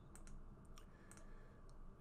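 A few faint clicks of a computer mouse, some in quick pairs, over near-silent room tone.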